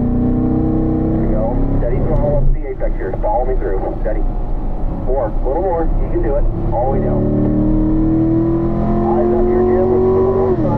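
A Corvette's V8, heard from inside the cabin, pulling under throttle in fourth gear. Its pitch climbs steadily over the last few seconds as the revs rise toward 6,000 rpm.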